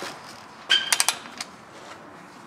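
A Snap-on cordless power tool working an 18 mm suspension nut to break it loose: a brief whine about two-thirds of a second in, then a short run of sharp metallic clicks.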